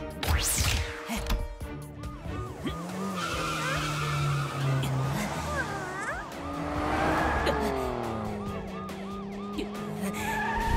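Cartoon sound effects of a small police car speeding off: a quick rising whoosh near the start, then the engine running with its pitch rising and falling, over background music.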